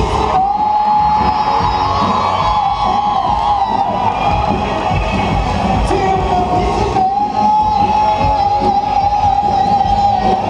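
Live band playing, with an electric guitar holding a long sustained note, over a cheering crowd.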